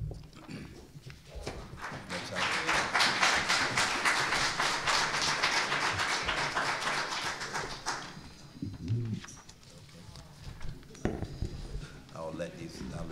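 Audience applauding in a meeting room, rising about two seconds in and dying away after about eight seconds.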